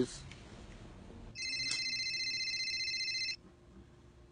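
A telephone ringing: one steady, high-pitched electronic ring lasting about two seconds, starting over a second in.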